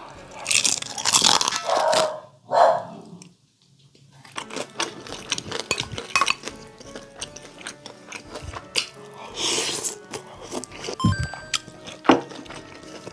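Close-miked biting and chewing of crispy deep-fried pork (tangsuyuk): loud crunches over the first few seconds, then a stretch of soft wet chewing clicks, with another loud burst of eating noise near ten seconds.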